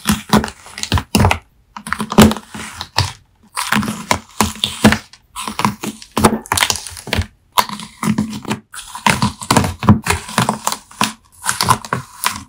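A knife cutting through a wax-coated, slime-soaked melamine sponge: crisp crackling and crunching as the hardened coating breaks, in quick runs of cuts with brief pauses between them. It is picked up by a phone's built-in microphone.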